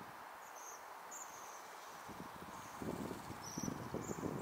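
Bohemian waxwings giving short, high-pitched trilling calls, one after another. About three seconds in, a louder low rustling, crackling noise sets in.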